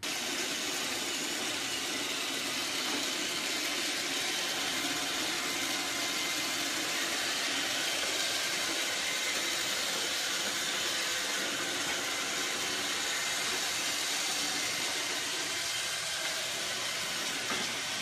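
iRobot Roomba robot vacuum running: a steady, even whirring hiss from its motor and brushes that does not change in level.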